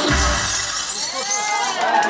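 The dance track ends on a deep bass hit with a glass-shattering sound effect, and the audience starts to cheer near the end.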